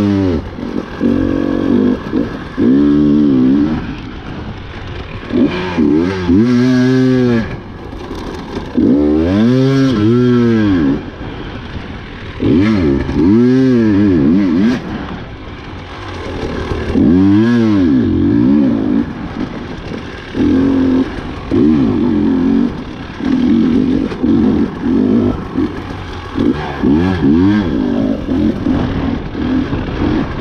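Husqvarna TE 300 two-stroke enduro motorcycle engine on the throttle, heard close from the bike, revving up and dropping back again and again in bursts a few seconds apart. In the last third the engine holds a choppier, more even note.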